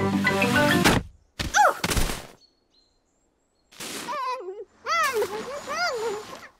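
Cartoon soundtrack: music stops about a second in, followed by a short thud with a falling pitch sweep. After a pause, a puff of noise and a muffled voice making wordless sounds.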